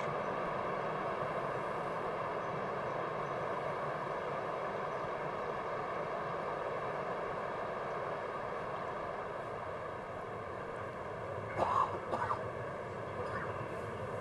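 Steady outdoor course ambience: an even wash of distant noise with no distinct events. A few brief, faint sounds break in a couple of seconds before the end.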